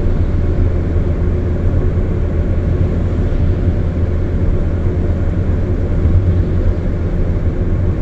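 Steady road noise inside a car's cabin at motorway speed: a constant low rumble with an even hiss above it.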